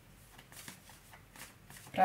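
A tarot deck being shuffled by hand: faint, irregular soft clicks and rustles of the cards.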